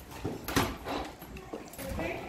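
Footsteps of a woman and a small child walking in sandals on a hard hallway floor: several quick, uneven steps.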